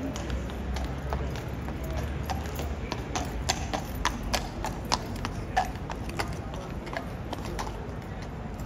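Shod hooves of a black cavalry horse clip-clopping at a walk on stone paving, a steady run of sharp hoofbeats that is loudest about halfway through as the horse passes close.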